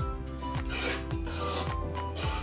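A long metal spoon scraping thick mashed ube halaya from the bottom of a wok in two long scrapes, over background music with a steady beat.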